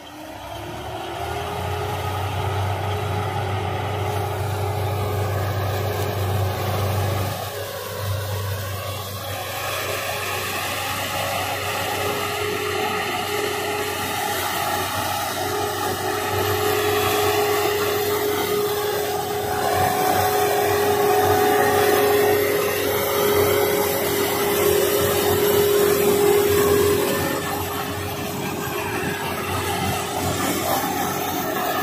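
Case sugarcane harvester and Mahindra Arjun tractor running together while the harvester cuts standing cane: a steady engine rumble with a continuous mechanical whine over it, growing louder after the middle.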